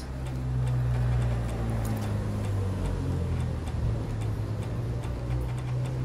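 Outdoor ambience in the rain on a wet street: a steady low hum with scattered light ticks of dripping rain.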